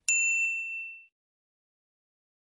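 A notification bell sound effect: a single bright, high-pitched ding with a faint click about half a second in, fading out within about a second.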